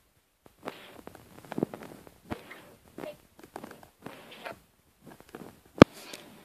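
Handling noise: irregular soft taps and rustles, with one sharp, loud click a little before the end.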